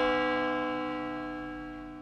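A closing musical sting: one bell-like chord, struck just before and ringing out, fading steadily.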